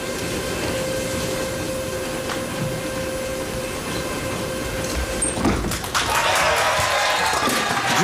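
Arena crowd hum, then a ten-pin bowling ball rolling down a wooden lane with a low rumble about five seconds in and crashing into the pins near six seconds. This picks up a spare, and the crowd cheers and claps right after.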